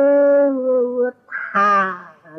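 A man's voice holding one long, steady drawn-out vowel for about a second, then a shorter vocal 'ah' near the end.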